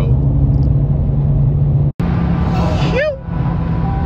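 A Dodge R/T's V8 engine and road noise drone steadily inside the cabin at very high highway speed, around 127 mph. The sound cuts out for an instant about halfway through, and a voice is briefly heard near the end.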